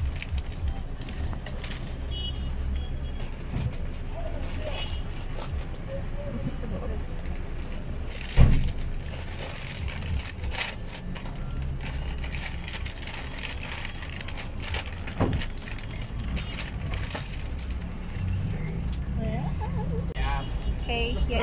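Low steady rumble of a car heard from inside the cabin, with one loud thump about eight seconds in and a smaller knock a few seconds later.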